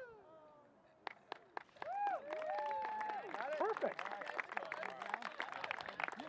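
A small group cheering and whooping, with scattered clapping, from about two seconds in, after a few sharp clicks about a second in.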